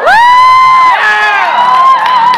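High-pitched whooping shrieks from the audience: one long held cry that swoops up and holds for most of the first second, then a second held cry near the end.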